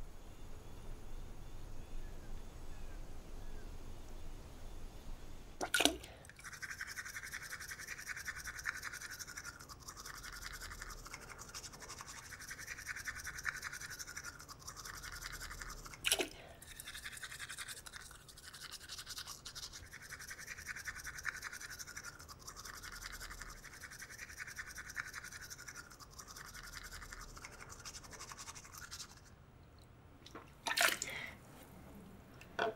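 Teeth being brushed with a toothbrush: fast, rough scrubbing strokes in spells of a couple of seconds with short pauses, starting about six seconds in. A sharp knock comes just before the brushing starts and another about sixteen seconds in.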